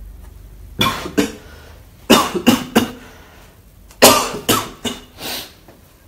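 A man coughing in three fits of two to four sharp coughs each, the loudest fit about four seconds in.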